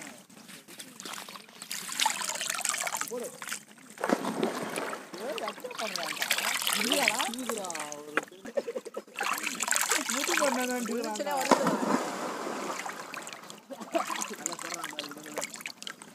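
Water splashing and trickling as pieces of raw turkey are washed in a pan of water and lifted out by hand, with voices talking over it through the middle of the stretch.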